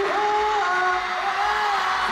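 A concert crowd singing a slow melody in unison, holding long notes that change pitch a few times, over the general noise of the audience.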